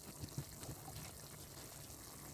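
Meat and broth simmering faintly in a wok, with a couple of soft knocks near the start as sliced vegetables are dropped in.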